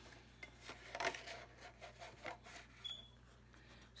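Faint rustling and scraping of cardstock as a scalloped paper mat is slid back into a paper pocket of a handmade exploding box, in several short strokes.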